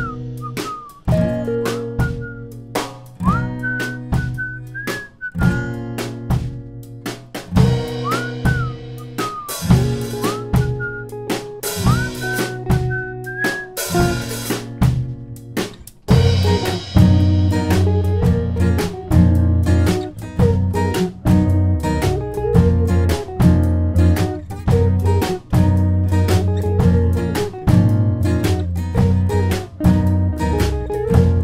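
Instrumental section of an indie rock band's song: drum kit and guitars with no vocals. A high lead line slides in pitch over the first half, and the band comes in fuller and louder with heavier bass about halfway through.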